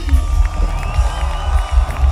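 Live band playing a groove with heavy bass and drums while the audience cheers and whoops for the bassist, who has just been introduced.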